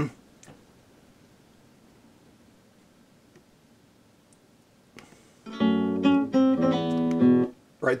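Near silence for about five seconds, then a click and a short passage on a nylon-string classical guitar played back from the video editor: several plucked notes over about two seconds that stop abruptly.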